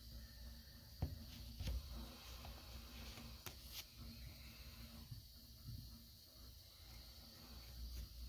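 Faint rustling with a few soft clicks scattered through it.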